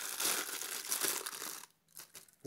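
Plastic bubble wrap around a camera body crinkling as it is pulled open by hand, stopping near the end.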